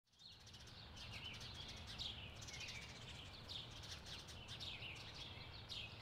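Faint outdoor ambience of small birds chirping: many short falling notes repeated about twice a second, over a low steady rumble.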